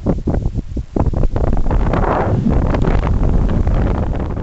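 Wind buffeting the microphone of a camera on a paraglider in flight, a low rumble with gusty thumps that gets louder and steadier about a second in.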